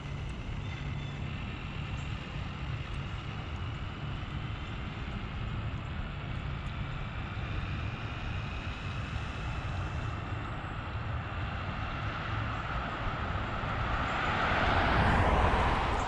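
A car coming down the road and driving past, its noise slowly growing louder, peaking near the end and then beginning to fade.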